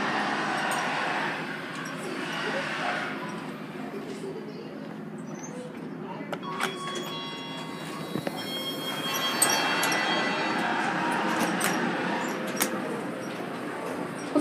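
Montgomery hydraulic elevator: several sharp clicks and knocks as the doors work, with a few thin steady tones, then a steady rushing hum as the car runs, under faint background voices.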